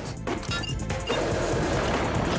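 Cartoon sound effects: a sharp hit as a control-panel button is slammed, then from about a second in a loud, steady rush of wind, with music underneath.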